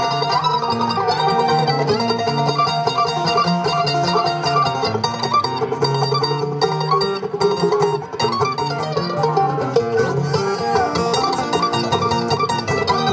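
Live acoustic bluegrass instrumental break: mandolin, five-string banjo and acoustic guitar playing together without vocals.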